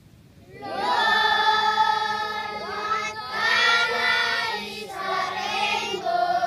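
A group of young children singing together, starting after a short pause under a second in.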